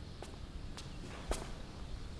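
A few soft footsteps on a floor, with the clearest step about halfway through.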